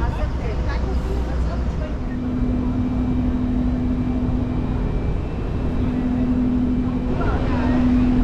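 A steady low machine rumble. About two seconds in, a steady hum sets in and holds with a few short breaks.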